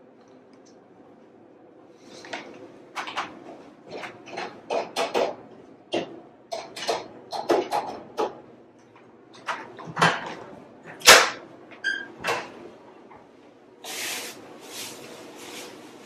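Irregular knocks and clicks, like doors and objects being handled indoors, starting about two seconds in, with the loudest knock near the middle. Near the end comes a rustling, scraping noise.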